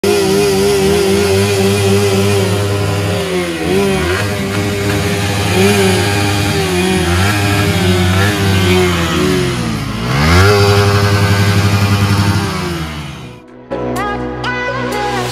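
Motorcycle engines revving, their pitch rising and falling repeatedly, mixed with electronic music. It all cuts off abruptly just before the end.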